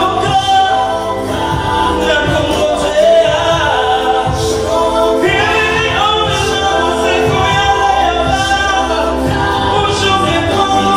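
A man singing a gospel song live into a microphone over a PA, with other voices and a low, regular beat underneath.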